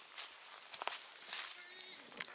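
Footsteps of a hiker walking down a dry mountain trail, boots crunching on leaves and brush at an uneven pace. A few faint steady tones come in near the end.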